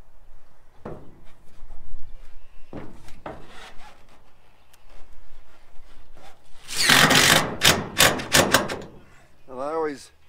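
Used metal roofing sheets being handled and screwed down: light scrapes early on, then a loud rasping, crackling burst of about two seconds, about seven seconds in.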